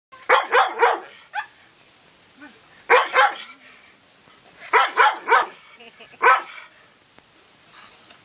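A large dog barking in short bursts of two or three sharp barks, about ten barks in all, with short pauses between the bursts.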